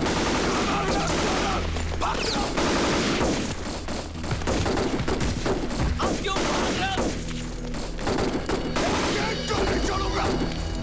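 Continuous rapid gunfire from many guns, a battlefield fusillade, with men shouting over it.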